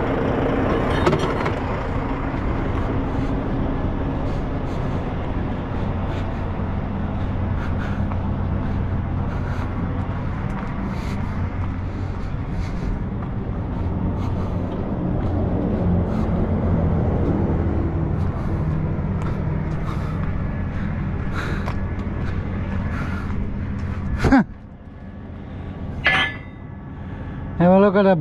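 Road train truck's diesel engine idling steadily. About 24 seconds in the engine sound cuts off abruptly with a click, leaving quieter outdoor background and a couple of short knocks.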